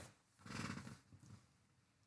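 Near silence, broken by one soft, breathy sound from a person lasting about half a second, starting about half a second in.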